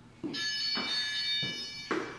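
Feet thudding on a rubber gym floor during burpee hops, four landings. Over them, a steady electronic beep of several high tones starts shortly after the first landing and lasts about a second and a half.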